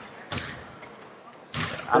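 A basketball bouncing on a gym floor, with a sharp thud about a third of a second in, during a pause in a man's speech; his voice comes back near the end.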